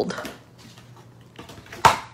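Soft cardstock handling, then one sharp tap about two seconds in as the flat paper box blank is put down on the cutting mat.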